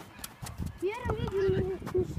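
Footsteps on an artificial-turf football pitch, a run of light, soft knocks, with a child's voice calling out in the second half.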